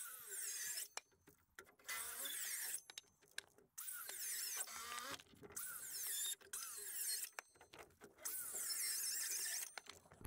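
Cordless circular saw cutting wooden joists in a series of short bursts, about six cuts of roughly a second each with brief pauses between.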